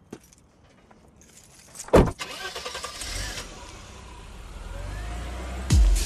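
A car door shuts with one loud thump about two seconds in, followed by the car's engine starting and running with a low rumble. Near the end a dance-music bass beat comes in.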